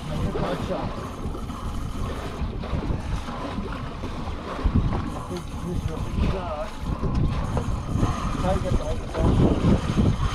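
Wind buffeting the microphone over water washing against a small boat's hull, with snatches of voices.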